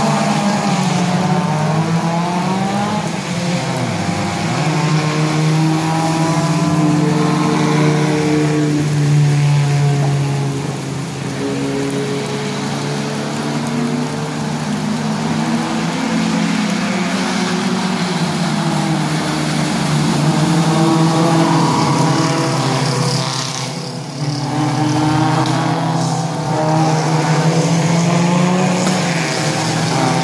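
Several small touring race cars passing at speed on a wet track, their engines revving and changing pitch as they go by, with tyre hiss and short lulls between passes.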